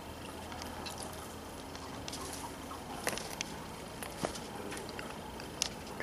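Faint steady background noise with a few light, scattered clicks and taps.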